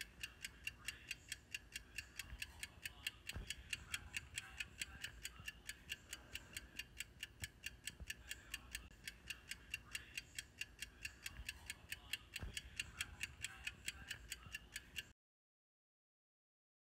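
Fast, even ticking like a clock or timer sound effect, about four or five ticks a second. It cuts off suddenly near the end.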